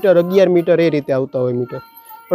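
Speech: a man's voice talking in short, broken phrases.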